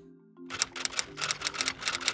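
A rapid run of typewriter-like key clicks, a sound effect that begins about half a second in and goes on for about two seconds as an on-screen caption is typed out. Soft background music with sustained low notes plays underneath.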